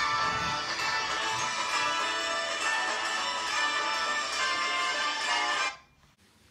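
A recorded Christmas song clip playing from a phone's speaker, cut off suddenly near the end.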